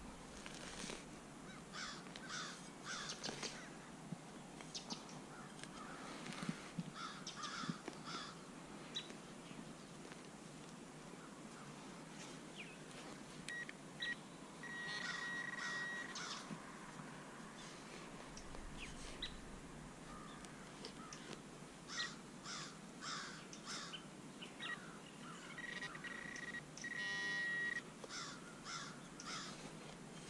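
Digging knife cutting and scraping into grassy soil as a deep target is dug, with a metal detector pinpointer giving a steady high tone twice, pulsing briefly near the end as it closes on the target. Crows caw in the background.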